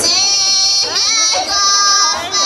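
Women's folk choir singing a Pomak folk song in high, strong voices, holding long notes with sliding ornaments between them.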